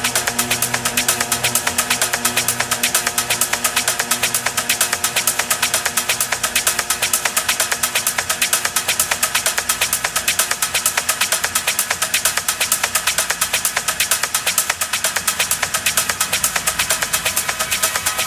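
Electronic dance music from a live DJ mix, in a breakdown: the kick drum drops out as it begins, leaving a fast, even run of hi-hat-like ticks over held synth tones.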